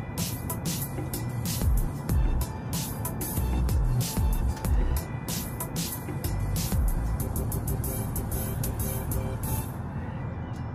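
Background music with a steady beat over the low road rumble of a moving car, heard inside the cabin. The beat drops out near the end.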